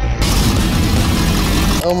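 Engine of a giant motorized shopping cart (the Shopper Chopper) running loudly as the cart comes down out of its trailer.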